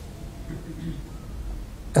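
A pause in a man's speech: quiet room tone with a low hum, and his voice starting again at the very end.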